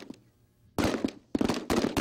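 Rifle fire from M4-style carbines: after a brief hush, a rapid string of sharp shots starts a little under a second in and keeps going, several shots close together.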